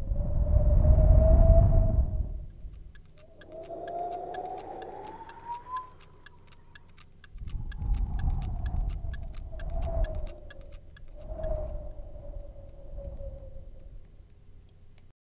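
A thin whistling tone that slowly wavers up and down over surges of low rumble, like wind howling in gusts. From about three seconds in, it is joined by a steady, fast ticking, like a clock.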